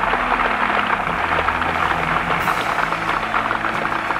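Large crowd applauding steadily.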